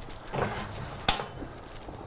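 A single sharp tap about a second in as a gyoza dumpling is set down in a frying pan of warm olive oil, over a faint steady hiss.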